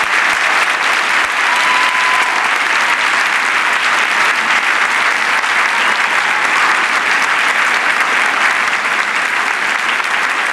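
Audience applauding with dense, continuous clapping after an orchestral performance.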